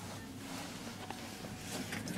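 Westinghouse/Schindler 500A elevator car riding between floors: a low, steady hum with a few faint clicks.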